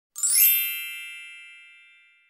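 A single bright chime sound effect for a logo intro: a quick upward sweep into a ringing ding that fades away over about a second and a half.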